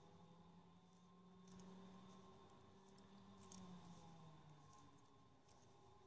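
Near silence: room tone with a faint steady hum and a few faint ticks of metal knitting needles as stitches are purled.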